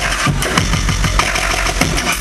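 Loud electronic music played over a club sound system, with a steady deep bass under dense beats and textures.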